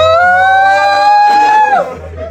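A long, high-pitched vocal cry, an excited squeal or "ooooh": it rises in pitch, holds steady for nearly two seconds, then drops off near the end.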